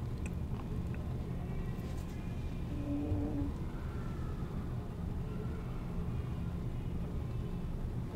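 A low steady background hum, with a few faint brief tones about three seconds in.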